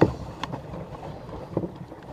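Wind rumbling on a small camera microphone in a small boat, with a sharp knock at the start and a couple of lighter knocks from handling.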